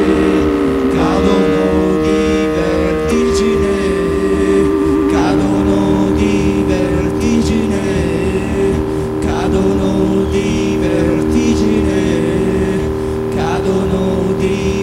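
Live rock band playing an instrumental passage: sustained keyboard chords with a wavering held tone over a steady bass and drum pulse, with accented strokes about every two seconds. The chords shift about three and five seconds in.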